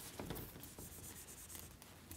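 Whiteboard eraser rubbing faintly across a whiteboard, wiping off marker lines.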